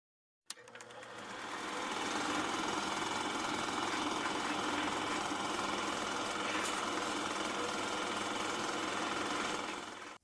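Film projector running with a fast, even mechanical clatter. It starts with a click about half a second in, fades up, holds steady, and dies away just before the end.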